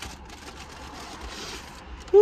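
Paper taco wrapper rustling and crinkling as it is handled and unwrapped, over a steady low rumble.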